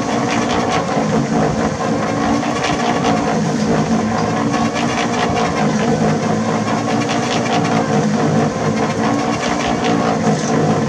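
A motor-driven machine running steadily with a constant hum, unchanged throughout.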